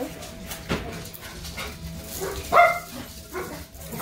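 A dog barking in short calls, the loudest bark about two and a half seconds in.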